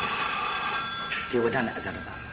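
A man's voice speaking briefly in the second half, over a steady high ringing tone that holds through the first second and a half.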